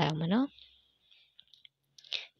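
A voice finishing a phrase in the first half second, then quiet broken by a few faint, brief clicks.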